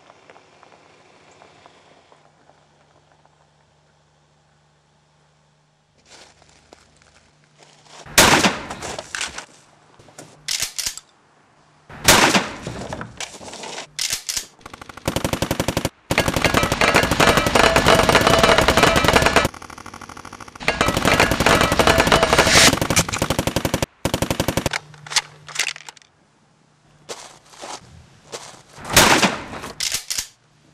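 Gunfight starting about eight seconds in: a few loud single gunshots, then two long bursts of rapid automatic gunfire lasting several seconds each, and shorter volleys near the end.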